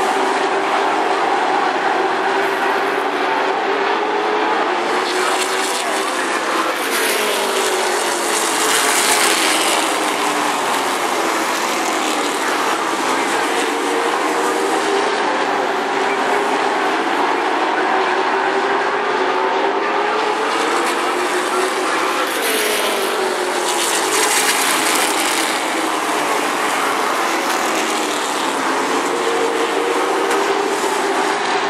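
Several late model stock car V8 engines racing together around an oval, their pitch rising and falling as they lift and accelerate through the turns. The sound surges louder as the pack sweeps past about eight seconds in and again at about twenty-three seconds.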